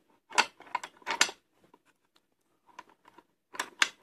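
Taylor Group 2 safe combination lock clicking as the dial is turned: a cluster of sharp metallic clicks in the first second, then a few fainter ones near the end, as the cam wheel catches the lever nose and pulls the bolt back.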